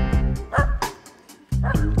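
A dog giving a few short barks in the first second, over background music.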